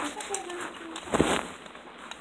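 A faint voice in the room, then a short rustling noise about a second in.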